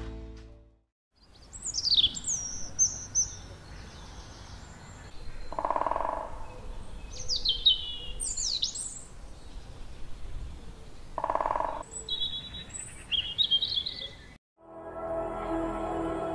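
Small songbirds chirping and singing in quick, high, falling notes over a soft outdoor background. Twice, at about six and eleven seconds in, a short lower sound cuts in. Music fades out at the start and comes back near the end.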